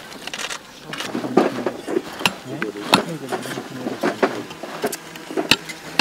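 Metal excavation trowels scraping and clinking against stone and dry soil, a string of sharp clicks at irregular intervals, with people talking indistinctly in the background.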